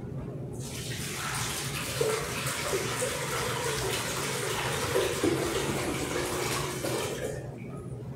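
Water poured in a steady stream from a pitcher into a bowl already holding water, splashing continuously; the pour starts about half a second in and stops abruptly shortly before the end.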